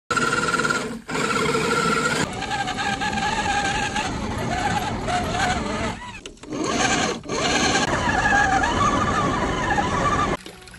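Electric motor and gear whine of an MN999 1/10-scale RC crawler driving off-road, the pitch wandering up and down with the throttle. The sound breaks off briefly about a second in and twice between six and seven seconds in.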